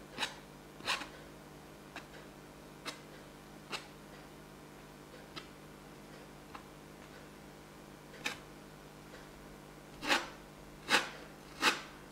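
A steel palette knife scrapes and spreads texture paste over a canvas in a series of short scrapes. The scrapes are sparse at first, then louder and closer together in the last two seconds.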